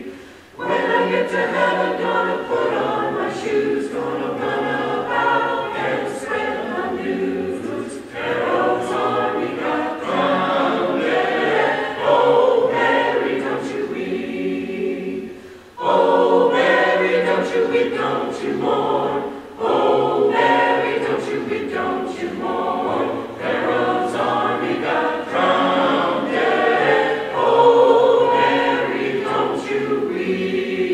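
Mixed choir of men's and women's voices singing, in phrases with short breaks between them, the clearest break about halfway through.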